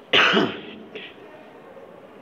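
A man clears his throat once: a short harsh burst about half a second long, right at the start.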